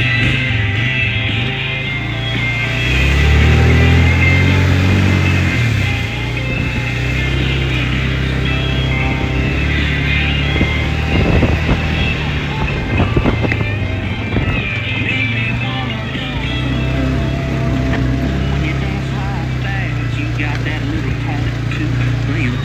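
ATV engine running along a rough trail, louder and higher in pitch for a few seconds as it speeds up, with a few knocks about halfway through. A song with singing plays over it.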